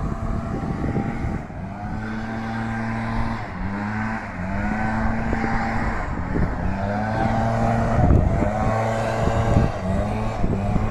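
Small petrol lawn-mower engine running steadily, its pitch dipping briefly about three and a half and six seconds in. Wind rumbles on the microphone throughout.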